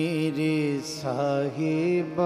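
A man singing Gurbani kirtan in long held, ornamented notes, without clear words. One wavering note is held, the pitch dips and glides about a second in, and a second note is held after it. Steady accompanying tones lie beneath.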